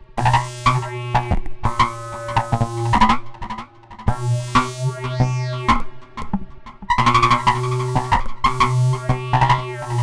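Sequenced modular synthesizer music: an Uhlectronic telephone synthesizer driven by RYK 185 sequencers, run through a Roland SPH-323 phase shifter and a Metasonix S-1000 Wretch Machine, with delay and reverb. A steady low drone sits under repeating clicky, pitched patterns that come in phrases and break off briefly around four and six seconds in.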